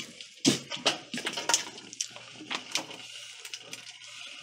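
Wooden cutting board knocking against a cooking pot and sliced smoked sausage dropping in, a string of irregular short knocks and clatters over a faint low hum.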